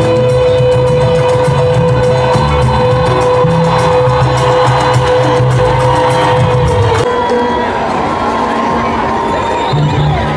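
Live band music ending on a long held note, then the crowd cheering and shouting once the music stops about seven seconds in.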